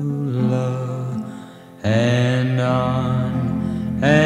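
Love-ballad music with long held notes; it thins out and fades a little past one second in, then comes back sharply just before the middle.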